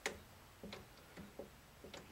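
A few light, irregular clicks from hands working a one-handed bar clamp and a flat blade at a guitar's glued neck joint, the first click the loudest.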